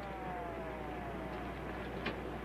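Police car siren sliding slowly down in pitch and fading out about a second and a half in, over the steady rumble of a vehicle.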